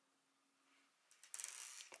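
Near silence for about a second, then faint handling noise: light clicks and rustling as a smartphone is picked up and handled.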